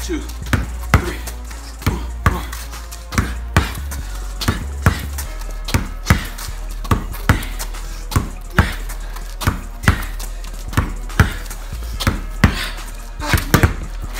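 A basketball dribbled hard on a concrete driveway: between-the-legs crossovers, each one two sharp bounces in quick succession, a pair coming a little more than once a second.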